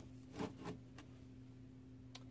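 Faint handling sounds: a couple of soft knocks about half a second in as a toothpaste box is set down flat in a plastic basket, then quiet room tone with a low steady hum.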